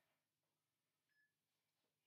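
Near silence, with only a very faint short blip about a second in.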